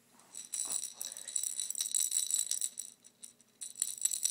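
A baby's jingling rattle toy shaken in quick bursts, a bright bell-like shimmer; it pauses about three seconds in and starts again near the end.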